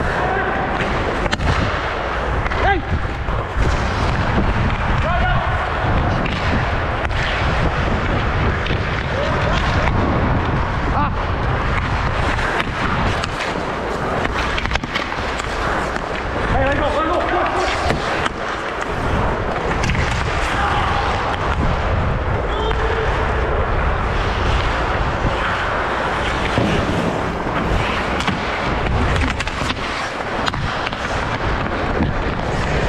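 Ice hockey play heard from a helmet-mounted camera: skate blades scraping the ice and sticks knocking against the puck, ice and other sticks, over a steady loud rumble of air and movement on the microphone.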